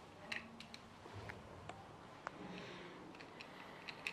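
Faint handling noises in a quiet room: a handful of light clicks and small knocks, the loudest about a third of a second in.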